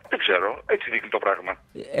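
Speech over a telephone line: a voice sounding thin and narrow, heard through the radio broadcast.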